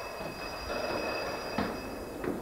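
A train rolling along with a steady high-pitched squeal from its wheels over a rumble, and a single knock about a second and a half in.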